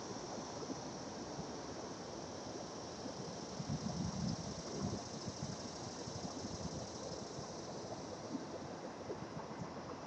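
Steady outdoor background noise, with a brief low rumble of wind on the microphone about four seconds in.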